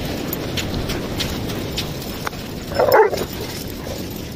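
A dog gives one short bark about three seconds in, over a steady low rumble of wind on the microphone.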